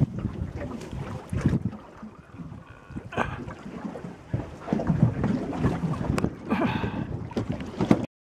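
Wind buffeting the microphone out on open water, with irregular low rumbling gusts. A brief higher-pitched sound comes about three seconds in and another short one near the end.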